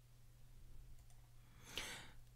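Near silence: faint low room hum with a couple of faint computer mouse clicks. There is a soft breath near the end.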